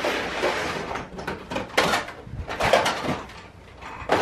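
Hard plastic toys being rummaged from a tub and set into a clear plastic storage bin: a rustle of handling, then a few sharp plastic clacks and knocks.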